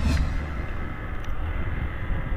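Honda CG 125 Fan motorcycle on the move: steady low wind rumble on the microphone over its single-cylinder engine.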